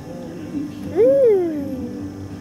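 A single drawn-out call about a second in, its pitch rising and then falling.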